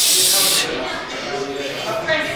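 A loud hiss for about half a second, then a voice.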